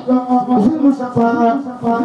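A man chanting a religious song into a handheld microphone, in long held melodic notes.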